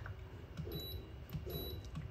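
A few faint clicks of the plastic push-button on an ultrasonic essential oil diffuser's base as it is pressed to cycle the light colours, over a low steady room hum.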